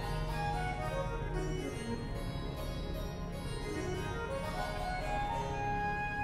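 Soundbeam 6 sounding harpsichord-like electronic notes, played by hand movements in its sensor beam. A run of notes steps downward and then climbs back up, over a steady low tone.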